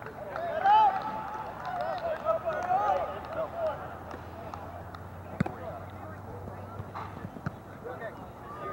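Shouts and calls from soccer players and onlookers carrying across an outdoor field during play, loudest in the first few seconds. A single sharp thump comes a little past the middle, over steady field noise.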